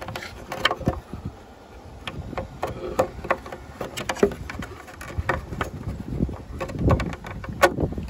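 Scattered plastic clicks and knocks as a tail-light bulb socket is worked into its housing to line up its grooves. A sharper click comes near the end as the socket goes in.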